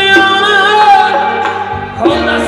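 A song: a voice holds long, wavering notes over instrumental accompaniment.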